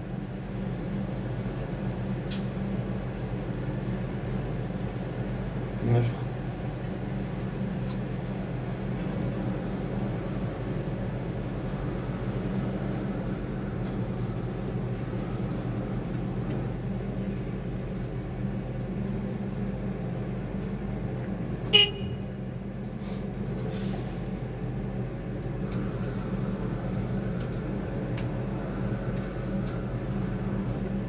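A steady low machinery drone from the construction site, with a short, sharp horn-like toot about 22 seconds in.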